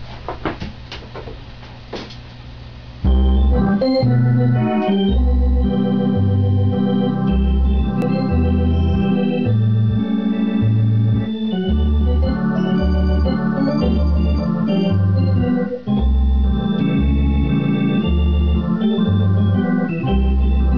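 A few sharp clicks, then about three seconds in a Hammond spinet organ starts playing. It holds sustained chords over pedal bass notes that fall on each beat and alternate between a lower and a higher pitch.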